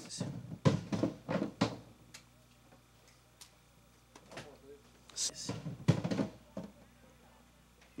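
Several soft knocks and thuds from a prop drum being handled and set down, grouped in the first two seconds and again around the middle, with quiet stretches between. Faint muffled voices lie underneath.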